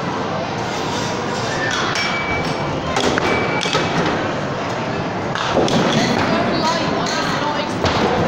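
A small Bowlingo ball is bowled down a short arcade lane, with thuds as it lands and a louder stretch about five and a half seconds in as it rolls on to the pins. Throughout there is a busy arcade din of voices and music.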